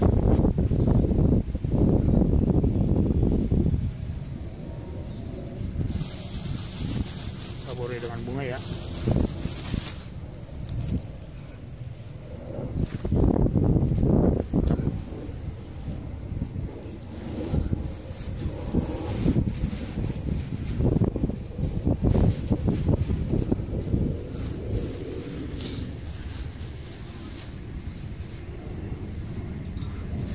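Wind buffeting the microphone in irregular gusts, heaviest in the first few seconds, with low murmured voices. A brief hiss comes through for a few seconds a little way in.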